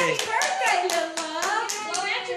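Hands clapping in an even rhythm, about four claps a second, with voices over it.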